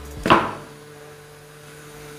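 Small handheld USB fan with a built-in water mist sprayer, running with a steady hum. A short burst of noise about a third of a second in is the loudest moment.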